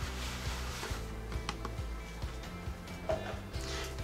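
Soft background music with a steady low bed. Over it, in about the first second, the faint hiss of powdery sweet cassava starch pouring from a plastic bowl into a glass bowl, followed by a few light clicks.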